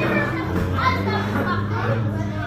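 Many children chattering and talking over one another, with music playing in the background.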